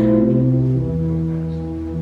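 Organ playing slow, sustained chords over deep held bass notes, the chord shifting about every second.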